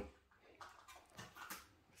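Near silence: room tone, with a few faint, brief sounds.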